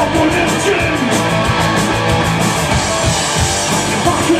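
Live punk rock band playing loud: electric guitar, bass guitar and drums, with a steady drive of cymbal strokes.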